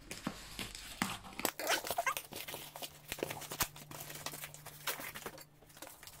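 Cardboard shipping tube being opened and a paper-wrapped canvas roll pulled out of it: irregular rustling, crinkling and scratchy tearing of cardboard and paper, with small knocks, busiest in the middle and dying away near the end.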